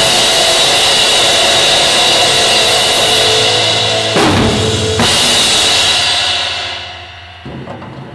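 Ending of a rock drum part on a vintage 1972 Rogers Powertone kit with Zildjian crash cymbals: sustained crashes backed by bass drum, renewed by fresh hits about four seconds in and again a second later. The cymbals then ring out and fade, with one light hit near the end.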